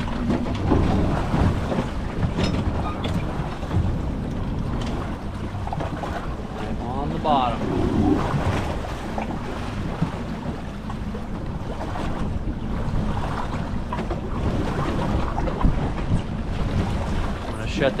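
Wind buffeting the microphone over a steady low rumble and open-water wash around a drifting fishing boat.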